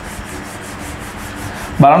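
Whiteboard being wiped clean by hand, a steady dry rubbing of quick back-and-forth strokes on the board surface. It stops as speech starts near the end.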